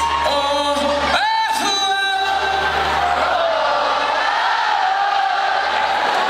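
Live pop-rock band with a male lead vocalist singing into a microphone in a large hall, the audience singing along. The low bass and keyboard accompaniment drops out about a second in, leaving the voice over the crowd.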